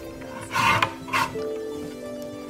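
Lever-arm guillotine paper cutter slicing through paper: a rasping shear about half a second in that ends in a sharp click, then a second, shorter rasp. Background music with sustained tones plays underneath.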